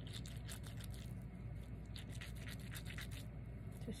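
Hands making quick, scratchy rubbing strokes in two runs, with a short pause between them and stopping about three seconds in. A low steady hum lies underneath.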